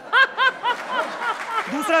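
A woman laughing hard in rapid, high-pitched pulses, about four a second, over a haze of studio-audience laughter.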